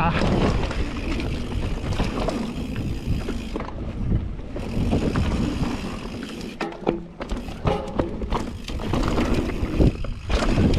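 Mountain bike riding fast down a dry dirt singletrack: wind buffeting the microphone, tyres rolling over dirt, and the bike rattling and knocking over bumps and roots.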